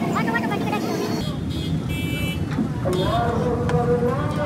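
Busy street ambience: steady traffic noise with background voices and chatter, and a short high horn-like tone about two seconds in.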